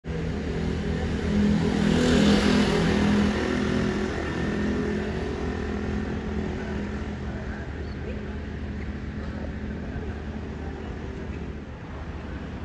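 A motor vehicle engine running with a steady low hum, swelling loudest about two seconds in and then slowly fading.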